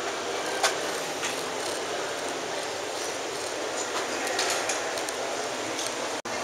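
Steady ambient noise of a large indoor museum hall, an even hiss-like wash with a few faint clicks.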